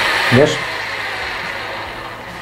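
Parkside PSF 4.6 A1 cordless screwdriver's small motor running under the trigger, getting steadily quieter as it slows: the battery is going flat and the tool barely turns.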